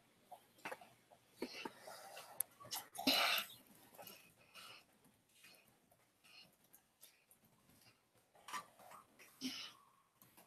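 Mostly quiet room with scattered faint clicks and a few short breathy noises, the loudest a brief breathy burst about three seconds in.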